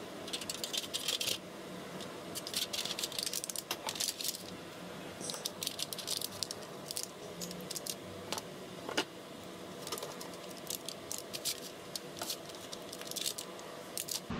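Stainless steel heat-treating foil being handled and folded around a knife blade: irregular crinkling with small metallic clicks and clinks throughout.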